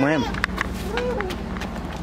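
Low rumble of handling and wind noise from a handheld camera carried while walking, with scattered short clicks of footsteps and movement. A voice trails off at the very start.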